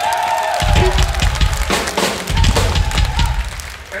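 Live rock drum kit played in a loose burst of kick drum, snare and cymbal hits, starting about half a second in with a short break around the middle.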